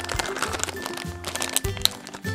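Clear plastic packaging bag crinkling and crackling as it is handled, over background music.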